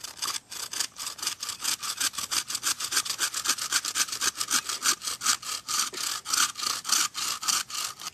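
Improvised bow saw, a steel saw blade strung in a bent-wood frame, cutting through a stick in quick, even back-and-forth strokes, about six a second.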